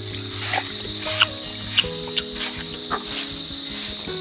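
Background music of soft held notes, changing pitch every second or so, over a steady high-pitched insect chirring with light regular ticks.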